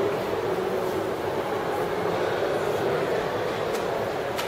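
Steady, even background noise of a shopping mall's indoor ambience, a constant low hum with no distinct events.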